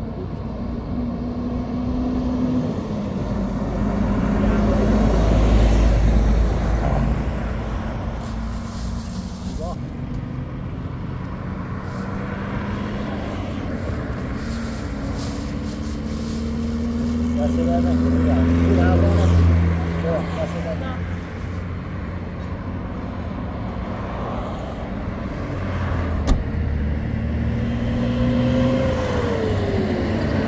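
Highway traffic passing close by: vehicles going by one after another. The loudest passes swell up about five and eighteen seconds in, and one engine's pitch falls as it goes past near the end.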